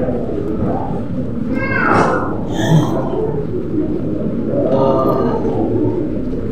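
Steady background noise of a busy airport walkway, with indistinct voices rising out of it now and then.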